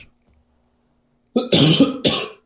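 A man coughing: a short silence, then a loud cough about a second and a half in that runs on past the end.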